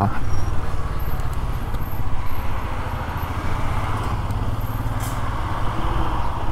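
Royal Enfield Scram 411's air-cooled single-cylinder engine running steadily at low speed in city traffic. Road and traffic noise from a coach bus alongside lies underneath.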